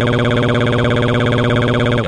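Computer text-to-speech voice drawing out the word "what" as one long, loud vowel held on a single flat, unchanging pitch.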